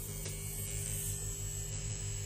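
XNET Wilk pen-style rotary tattoo machine running with a steady buzzing hum while its needle cartridge is dipped into black ink.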